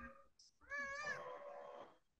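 A faint, high-pitched drawn-out call lasting about a second, its pitch arching up slightly and then easing down, after a shorter faint call at the very start.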